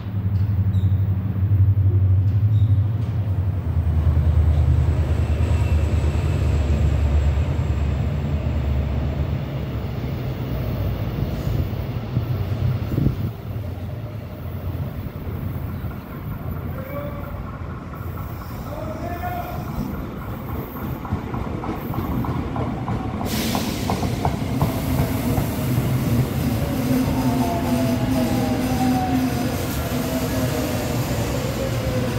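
Seoul Line 1 electric commuter train on the platform tracks. A heavy low rumble eases off about ten seconds in. From about 23 seconds in comes the rushing hiss and wheel noise of a train pulling in, with a whine that falls in pitch as it brakes.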